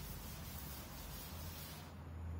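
Chalkboard duster rubbing across a blackboard to erase chalk: a steady scrubbing hiss that stops just before the end.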